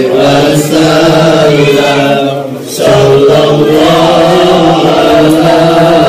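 A group of men chanting Arabic devotional verses together in a loud, drawn-out melodic chant, with a short breath pause about two and a half seconds in.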